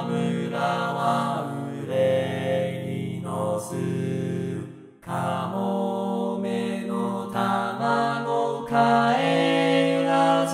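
Four-part male chorus sung by Vocaloid synthesized voices, unaccompanied, holding slow sustained chords. The voices break off briefly about halfway through and then come back in.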